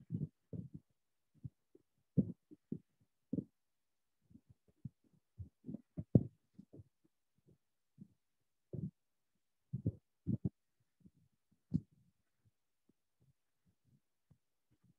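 Irregular soft, muffled low thumps and bumps, scattered a few at a time with quiet gaps between them; the loudest comes about six seconds in.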